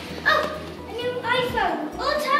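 A child's voice making two short high-pitched calls without clear words, the second, about a second in, longer and rising then falling in pitch.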